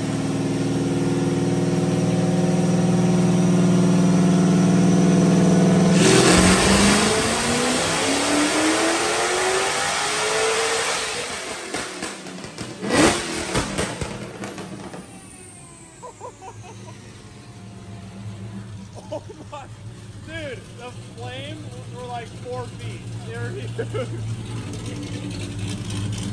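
Whipple-supercharged Dodge Challenger Hellcat V8 making a wide-open pull on a chassis dyno. It holds a steady note that grows louder for about six seconds, then the revs climb until the throttle closes, and a sharp bang about halfway through marks a backfire. A falling whine follows as it coasts down, then it settles to a low idle.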